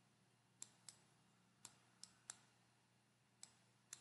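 Near silence broken by about seven faint, sharp clicks at irregular intervals, made while handwriting is entered on screen with a pen or pointer.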